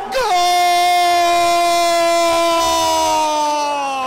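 Spanish-language football commentator's goal cry: one long shout held on a single note and drawn out for several seconds, slowly falling in pitch.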